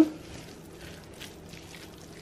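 Spatula stirring ground turkey, bell pepper and shredded cheddar in a pot, faint soft scraping and squishing.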